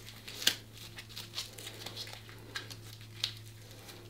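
Windlass of a knockoff CAT-style tourniquet being twisted tight on an arm: the strap and band crinkle faintly, with a few scattered clicks, the sharpest about half a second in.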